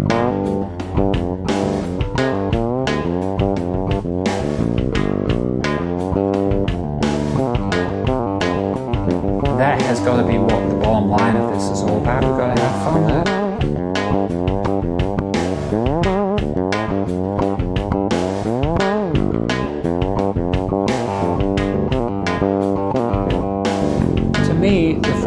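Fretless electric bass played in a busy, melodic line over a steady backing beat, with notes sliding smoothly up and down in pitch.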